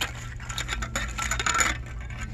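Hanging metal Christmas ornaments, corrugated tin snowmen, clinking and jingling against each other as a hand handles them. There is a click at the start, then a dense run of small metallic clinks from about half a second in until shortly before the end.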